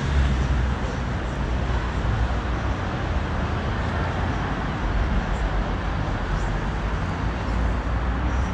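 City street ambience: steady road traffic noise with a low rumble that swells near the start and again near the end.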